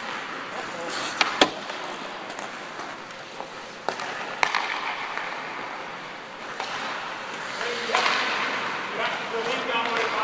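Hockey skates scraping and gliding on ice, with several sharp clacks of sticks and puck in the first half, and players' voices in the background.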